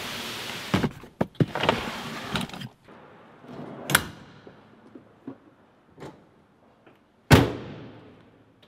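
Plastic storage tubs being slid and set down in the back of a 4WD, scraping and knocking for the first two and a half seconds. A single sharp knock follows about four seconds in, then a few light clicks. A loud bang near the end.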